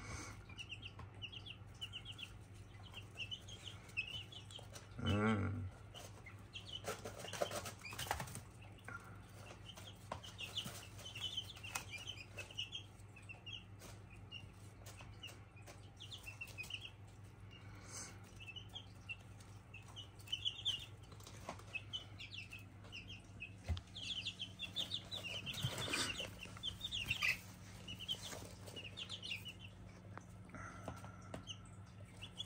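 Young chicks peeping over and over in short high chirps, with occasional rustling of feathers and handling, over a steady low hum.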